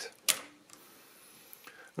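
A single sharp click about a third of a second in as a key is pressed on a Mercedes-Euklid mechanical calculator's keyboard, followed near the end by a couple of faint ticks. The key press shifts a small gear along its axle to engage a different toothed rack.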